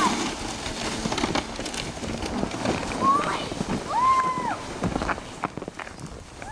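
Steady outdoor rumble and hiss with scattered knocks, and two high, drawn-out shouts from children about three and four seconds in.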